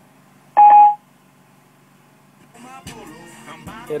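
A single short electronic beep from the iPhone's voice control about half a second in, acknowledging a spoken command. Music then starts playing through the car's speakers from about two and a half seconds in.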